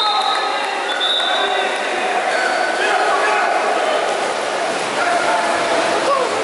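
Shouts and calls of water polo players and coaches ringing around a reverberant indoor pool hall, over a steady wash of splashing.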